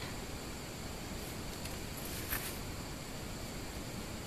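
Steady background hiss with a few faint, brief rustles of small cardstock pieces and a brush pen being handled on a table.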